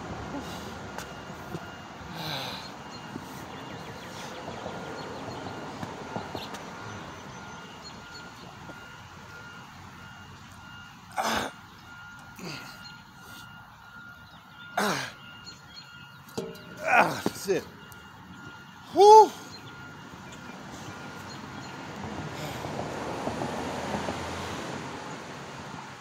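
A man grunting and blowing out hard with effort a handful of times, a few seconds apart, between about ten and twenty seconds in, while doing pull-ups. The last grunt is the loudest, with a short falling pitch. Steady outdoor background noise runs underneath.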